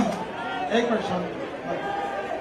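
Speech only: a crowd's murmured chatter, with a man's single word over a microphone public-address system.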